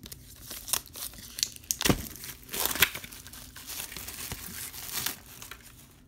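Plastic shrink wrap crinkling and tearing as it is pulled off a Blu-ray steelbook case, in irregular crackles with a few sharper snaps, the loudest about two and three seconds in.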